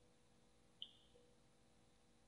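Near silence: room tone, with one faint, very short high tick a little under a second in.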